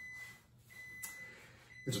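A quiet pause with a faint, thin high-pitched tone that drops out and comes back a few times, and a small click about a second in.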